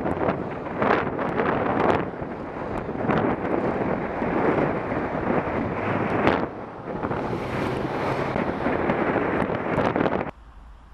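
Wind buffeting the microphone of a bicycle-mounted camera while riding: a loud, steady rush broken by several brief, louder gusts.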